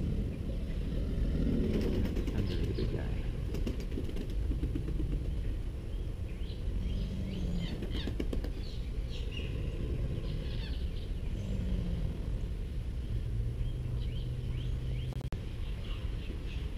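American alligators bellowing, the breeding-season call: a deep, low rumbling throughout, with a few drawn-out low drones in the second half. Birds chirp high above it now and then.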